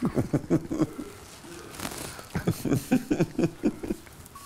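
A man laughing in short, quick bursts, twice.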